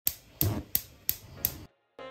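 A gas hob's electric spark igniter clicking five times at an even pace of about three clicks a second, then cutting off.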